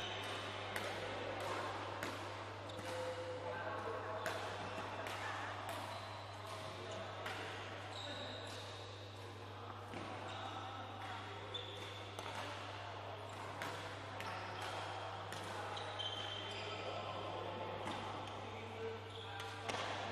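Badminton rackets striking a shuttlecock in a rally, with sharp cracks and knocks and shoe squeaks on the court floor, echoing in a large hall over a steady low hum.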